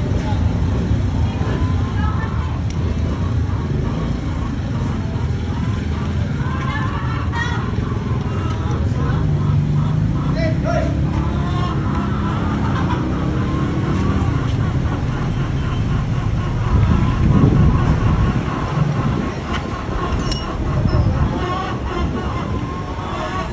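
Background chatter of voices over a steady low rumble of vehicle engines running.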